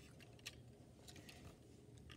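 Near silence: room tone, with one faint click about half a second in.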